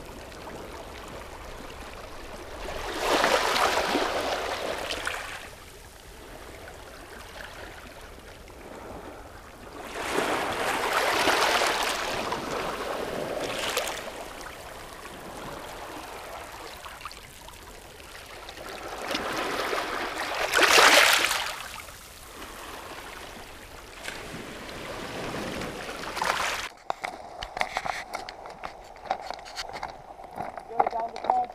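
Small sea waves washing in over rounded boulders and pebbles at the water's edge: three surges of a few seconds each, about seven to eight seconds apart, with a low steady wash between, the third the loudest. Near the end the wash gives way to a fainter outdoor background with small clicks.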